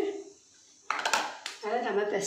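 Metal utensils clattering against a stainless-steel mixing bowl, a sudden burst of clinks and scrapes about a second in.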